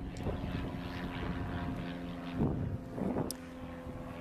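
An engine running steadily: a low hum holding several level tones, with two short noisy swells in the second half.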